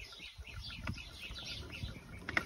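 Birds chirping: many short, high chirps repeating steadily.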